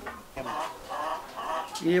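Chickens clucking in the background, a few short calls, quieter than the talk around them.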